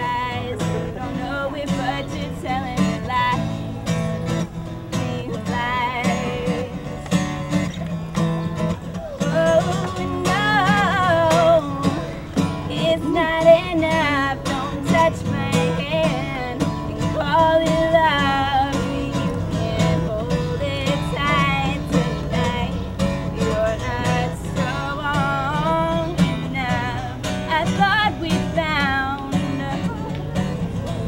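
A woman singing a slow folk-pop melody to her own strummed acoustic guitar, played live. The voice comes through more strongly from about ten seconds in.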